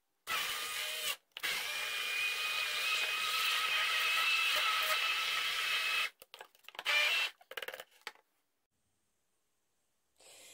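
Cuisinart Smart Stick immersion blender running in a stainless steel cup, puréeing mushy canned hot peppers into sauce. It runs briefly, stops for a moment, then runs steadily with a whine for about four and a half seconds. A few short bursts follow before it stops about eight seconds in.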